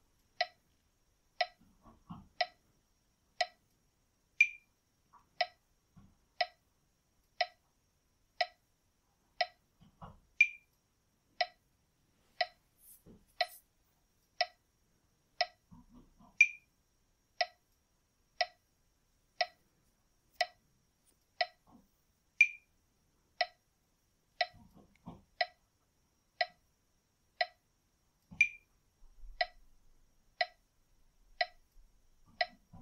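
Metronome ticking steadily about once a second, every sixth tick higher and louder.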